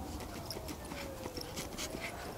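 Two huskies digging in grassy soil: quick, irregular scratches and scrapes of paws and muzzles in the earth. Under them a faint tone slides slowly down in pitch and back up.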